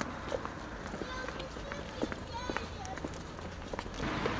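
Footsteps of people walking on a paved sidewalk, irregular short steps over steady street background noise, with faint voices.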